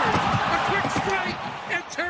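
Ice hockey arena crowd noise that rises on a scoring chance and dies away in the last half second, under a television play-by-play commentator's raised voice.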